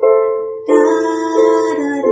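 Electronic keyboard playing a slow run of chords: a new chord is struck about every two-thirds of a second and fades before the next.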